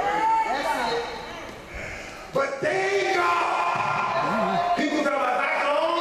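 A man preaching through a microphone in long, held, half-sung pitches, dropping quieter about a second in and coming back loud and sudden shortly before halfway.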